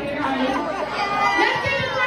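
A crowd of people talking and calling out over one another, several voices at once.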